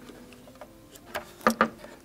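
Light clicks and taps of parts being handled inside an opened iMac, a few sharp ticks close together in the second half over an otherwise quiet background.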